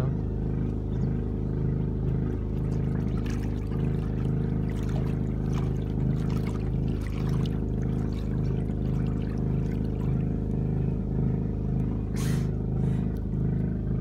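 A boat's generator running steadily, a constant low hum with a regular pulse. A short rush of noise comes about twelve seconds in.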